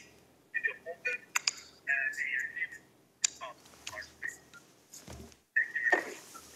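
Faint, indistinct sounds over an open telephone line: scattered clicks and brief muffled noises from the caller's end while nobody speaks clearly.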